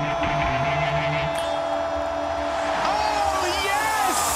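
Podcast intro music and sound design: a low synth drone with sustained tones and a pitch that dips and rises, then several gliding tones sweeping near the end.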